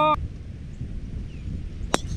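A golf club striking a ball once: a single sharp crack near the end, over a low background rumble.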